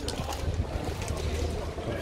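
Low, steady wind rumble on the microphone, with faint background noise around it.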